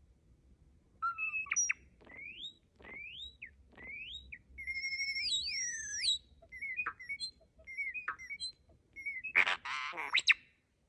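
European starling singing a mechanical-sounding medley that starts about a second in: short whistles, rising slurred notes and clicks, with two whistled notes looping around each other at once midway. It ends in a loud, harsh rasping burst near the end.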